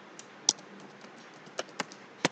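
A few irregular keystrokes on a computer keyboard, the loudest about half a second in, with a couple more close together near the end.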